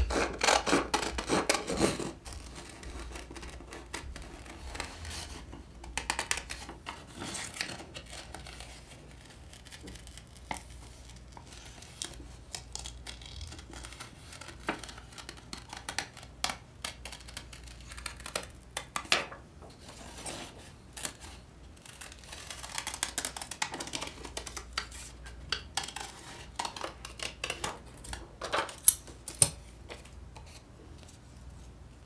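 Scissors snipping through glossy magazine paper in short, irregular cuts, with paper rustling and sliding as pages are handled. The loudest rustle comes in the first two seconds.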